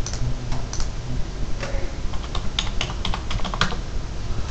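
Keys clicking as a phone number is typed in: a few scattered keystrokes, then a quick run of about a dozen in the second half.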